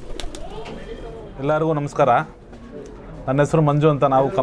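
Racing pigeons cooing, with a man's voice speaking briefly about halfway through and again near the end.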